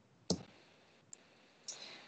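Computer mouse clicking while working in the software: a sharper click about a quarter of a second in, a faint one about a second in, and a softer one near the end.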